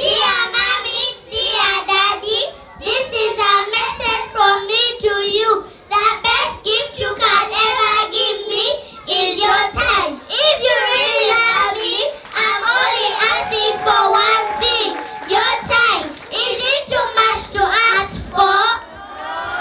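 A young girl singing into a microphone, amplified through a loudspeaker, in a single high voice with short breaks between phrases.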